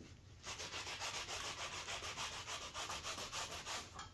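Paintbrush scrubbing acrylic paint onto a stretched canvas in quick back-and-forth strokes, a rapid scratchy rubbing that starts about half a second in.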